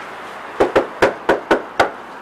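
Knuckles knocking on a front door: about six sharp raps in a quick, uneven run, starting about half a second in.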